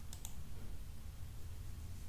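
Computer mouse clicking: two quick clicks just after the start, over a steady low hum.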